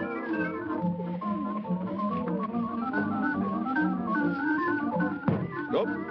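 Organ music playing a quick-moving melody over held chords, with a short sharp sound near the end.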